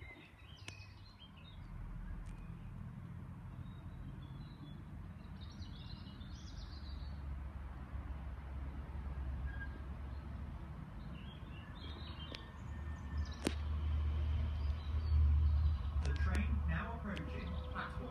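Railway station ambience: a low rumble that grows louder through the second half, with occasional bird chirps. Near the end, an automated platform announcement warning of a train that does not stop begins.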